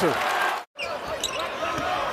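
Basketball arena crowd noise that drops out abruptly for a moment at an edit about two-thirds of a second in. It then resumes as crowd murmur with the short thuds of a basketball being dribbled on the hardwood.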